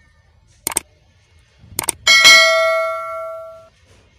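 Subscribe-button sound effect: two quick double clicks about a second apart, then a bright bell ding that rings out and fades over about a second and a half, the notification-bell chime.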